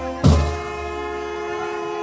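Live band music: a drum hit about a quarter second in, then a long held chord that slowly fades.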